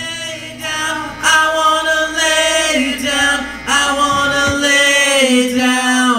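Male voices singing a cappella in close harmony, holding long notes, after the full band cuts out right at the start; a faint low hum sits underneath for the first few seconds.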